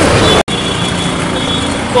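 Street traffic noise with faint voices in the background, broken by a brief dropout about half a second in where the audio is cut.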